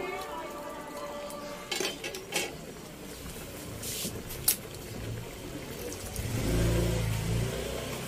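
Squid adobo simmering in a wok, with scattered pops of bursting bubbles. Background music fades out at the start, and a low rumble swells near the end.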